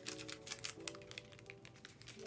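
Faint crackling of a sanitary pad's adhesive strip and its paper backing being handled and peeled, a quick run of small ticks, with soft background music holding steady notes.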